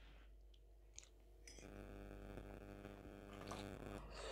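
Near silence with a faint steady hum: a metal fork scraping and clicking lightly on a plate as food is scooped up, and faint eating sounds as the fork goes to the mouth near the end.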